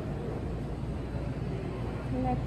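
Steady low rumble of background room noise in a large indoor hall, with no distinct events.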